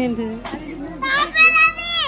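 A young boy's high, drawn-out excited squeal of laughter starting about a second in, falling in pitch at the end.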